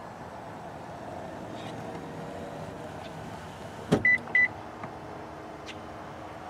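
Power-return motor of a 2017 Nissan Murano Platinum's second-row seatback running with a faint steady whine as it raises the folded seat. A sharp latch click comes about four seconds in as the seat locks upright, followed at once by two short high beeps.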